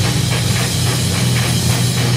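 Industrial/groove metal music: distorted electric guitar and a drum kit playing a fast, even rhythm.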